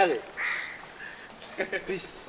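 Men's voices: a spoken phrase ends at the start, then a short breathy vocal sound, then brief voice sounds near the end.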